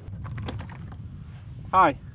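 Light plastic clicks and ticks as a plastic tackle box is handled and its lid unlatched and opened, over a low steady rumble. A short voice sound comes near the end.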